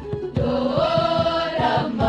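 A choir singing a hymn together; a brief break about a third of a second in, then a new held note that slides upward, over a regular low beat.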